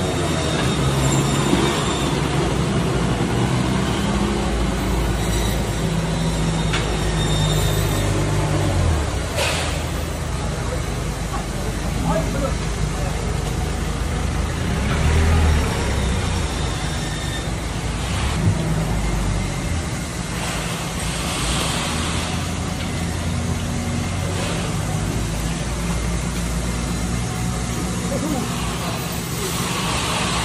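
Market background noise: a steady low engine rumble with indistinct voices mixed in.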